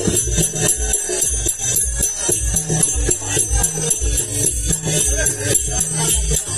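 Live folk-theatre accompaniment: a steady, evenly repeating drum beat under a continuous jingling of small metal percussion.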